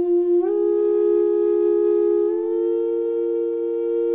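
Steady, nearly pure musical tones held as a drone chord. One note is already sounding; a second, higher note slides in about half a second in, and the chord shifts slightly higher again a little after two seconds.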